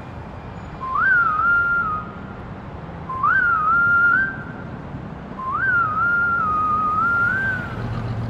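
A whistled tune in three phrases, each opening with a quick upward leap and then wavering around one pitch, the last phrase the longest. It plays over a low steady rumble.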